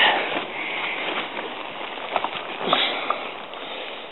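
Sleeping bag and hammock fabric rustling close up as a person shifts and settles into a hammock.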